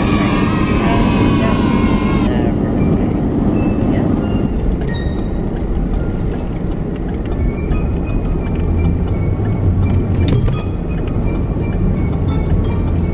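Steady low road rumble inside a moving car, with light background music of short scattered notes. A voice is heard during the first two seconds.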